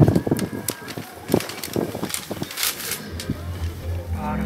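Irregular clicks, knocks and rattles from the opened cab door of a Scania tipper truck and the hand handling it, over a low steady hum.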